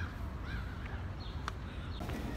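A bird calling several times in short, harsh calls, with a sharp click about one and a half seconds in.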